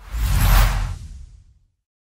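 Whoosh sound effect in an animated logo intro: a single noisy rush with a deep low rumble underneath, loudest about half a second in and fading out by about a second and a half.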